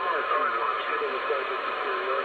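A distant station's voice received on lower sideband through the AnyTone AT-6666 radio's speaker, thin and cut off at top and bottom, over a steady hiss of band noise.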